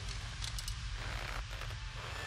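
A low steady rumble from the cartoon's soundtrack, with a couple of faint brief ticks.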